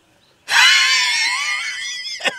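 A man's long, high-pitched squealing laugh. It starts abruptly about half a second in and is held, slowly fading, for about a second and a half.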